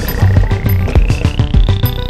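Background electronic music with a steady drum beat and a synth sweep rising in pitch throughout.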